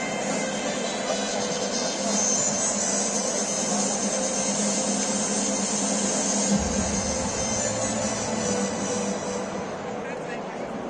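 Music over a stadium's public-address system, echoing around the stands as a steady wash of sound, with a low rumble joining about two-thirds of the way through.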